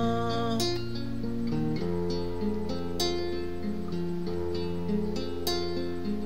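Instrumental passage of a Greek song with no singing. A plucked acoustic string instrument sounds sharp notes about every two and a half seconds over sustained low notes that change pitch a few times.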